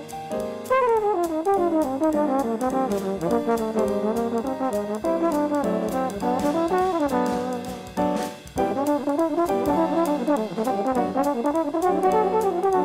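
Trombone playing a fast jazz line with quick runs and slides over a drum kit keeping steady time on the cymbals. The horn breaks off briefly twice, just after the start and about two-thirds of the way through.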